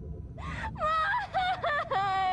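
A solo singing voice comes in about half a second in, sliding through a run of bending, wavering notes over a soft, low backing.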